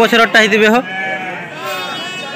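A ram bleating: one loud, wavering call lasting under a second at the start, with people talking behind it.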